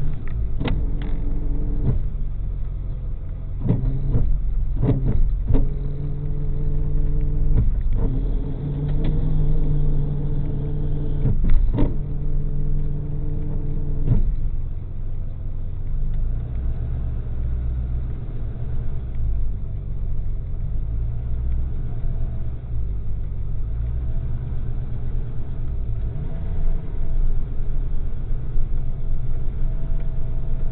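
A tow truck's engine runs with a steady low rumble as the truck backs up to a parked car. Through the first half a steady hum is joined by several sharp clicks and clanks, which stop about 14 seconds in.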